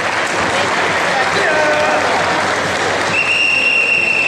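Spectators clapping and calling out at a karate kumite match as the referee halts the fighters. Near the end a steady high tone sounds for about a second.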